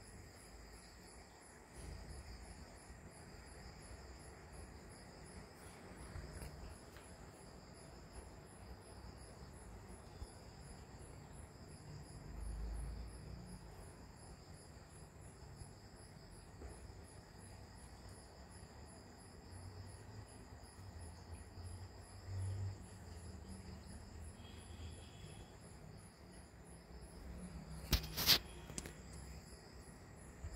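Faint, steady, high-pitched chirring, insect-like, with a faint pulse repeating several times a second. A few soft low bumps come and go underneath.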